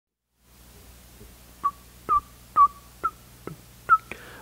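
Six short, high-pitched chirps, about two a second, each starting with a click, over a faint steady hum.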